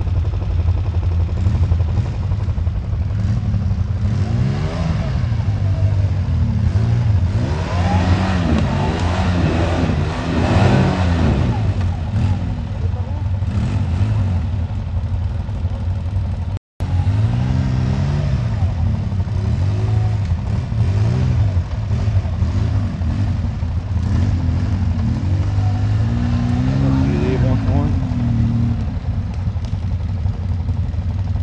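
Quad bike (ATV) engine revving again and again, pitch climbing and falling, as it is driven through deep mud ruts. The sound cuts out completely for a moment a little past halfway.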